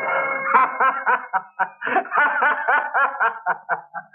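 A man laughing heartily in quick repeated bursts, starting about half a second in, just as a held music chord ends.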